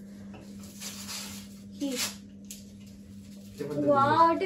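Quiet room with a steady low hum, a brief short vocal sound about two seconds in, and a voice starting to speak near the end.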